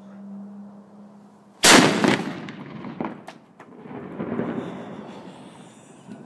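A small signaling cannon fired once by its lanyard: a single very loud boom about two seconds in, followed by a long rumbling echo that dies away. A steady low hum is heard before the shot.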